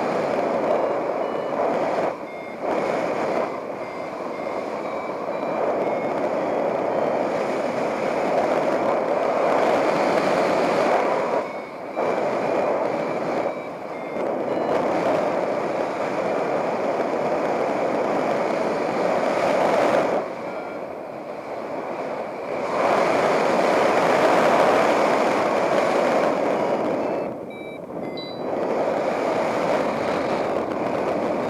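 Airflow rushing over the microphone in paraglider flight, dipping briefly a few times. Over it, a variometer's short repeating beeps come in runs that step up in pitch, the vario's signal of climbing in lift.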